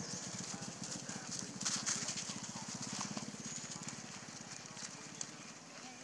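Dry leaf litter rustling and crackling under young macaques as they wrestle and scamper, with the louder crackles about two seconds in. Under it runs a rapid low pulsing that fades out after about four seconds.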